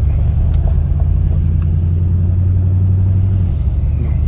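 Ford Torino's engine pulling steadily under load, heard from inside the cabin. About three and a half seconds in, its note drops as the C4 automatic transmission shifts up a gear during a shift test.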